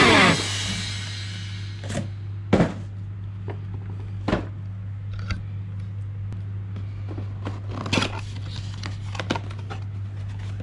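Cardboard box and plastic packaging being handled: several separate knocks and clicks, with light scraping between them, as a boxed RC truck is lifted, set down and opened. A steady low hum runs underneath.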